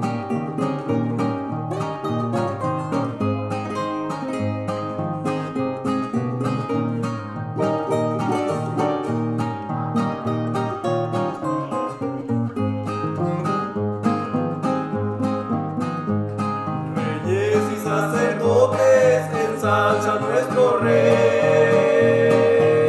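Two nylon-string acoustic guitars playing a picked instrumental passage together. Singing voices come in over the guitars about three quarters of the way through.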